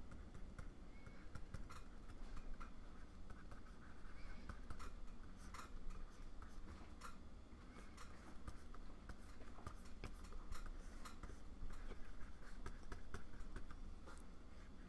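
Plastic stylus nib scratching and tapping on the glass of a Wacom Cintiq pen display, in quick, irregular strokes, faint over a low steady hum.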